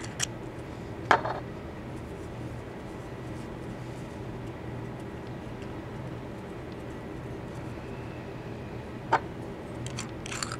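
A few short, light clicks and taps from handling the solvent applicator and gauze, the loudest about a second in and another near the end, over a steady low hum.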